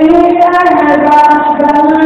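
A high-pitched voice singing long held notes that step and glide between pitches.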